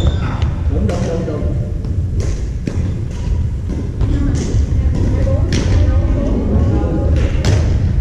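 Badminton rackets striking the shuttlecock in rallies, several sharp cracks a second or two apart, echoing in a gym. Players' voices and a low rumble run underneath.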